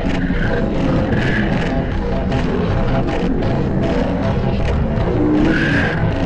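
A loud, continuous mash of heavily distorted audio effects: several clips layered over each other, with music in the mix and no clean single source.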